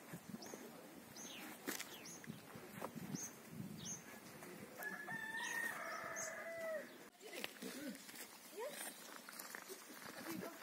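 A rooster crowing once, a drawn-out call of about two seconds starting about five seconds in, dropping in pitch at its end. Short, high bird chirps repeat throughout.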